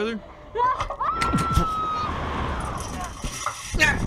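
A slingshot ride launching: wind rushing over the ride's onboard camera microphone, with a rider crying out on one held high note for about a second.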